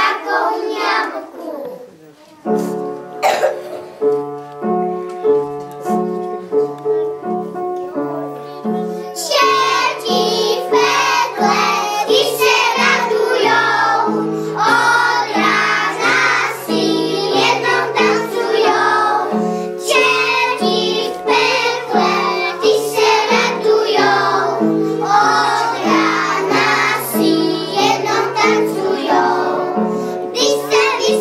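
A group of young children singing a song together over an instrumental accompaniment with a steady, repeating bass line. The accompaniment starts after a brief pause about two seconds in, and the children's voices join at about nine seconds.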